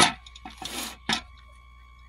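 Plastic keypad and screen assembly being peeled off its glued seat in the pump drive's housing and lifted out: a sharp click, a short scraping peel, then another click.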